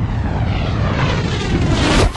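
Electronic noise riser in a dance remix intro: a rushing swell that climbs steadily in pitch and loudness, building tension, and cuts off sharply at the end as the beat drops in.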